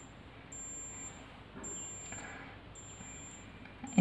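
Digital thermometer beeping: four high-pitched beeps about a second apart, each lasting about half a second.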